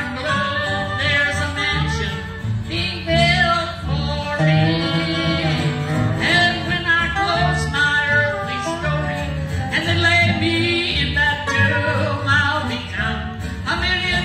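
Live bluegrass gospel music: dobro, upright bass and acoustic guitar playing together, with singing.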